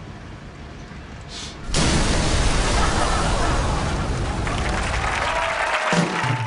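A sudden loud explosion of the old gas-leaking sedan about two seconds in, running on into studio audience applause and cheering.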